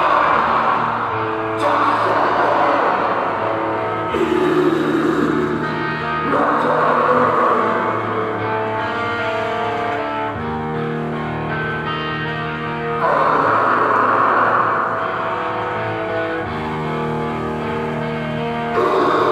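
Hardcore band playing live with distorted electric guitars, bass and drums: heavy held chords that change every two to three seconds.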